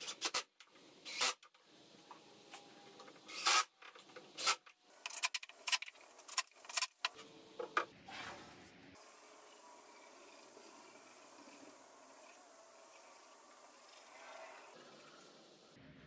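Wooden frame pieces rubbing, scraping and knocking against each other and the workbench in a string of short, irregular bursts over the first half, then only faint room tone.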